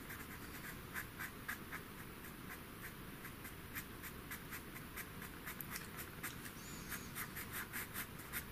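Pastel pencil scratching across textured pastel paper in quick short strokes, a run of light scratches several a second that grows a little denser toward the end, as fine black hairs are put in.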